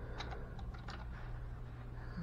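A quick run of light clicks and taps, about six in the first second, over a steady low hum.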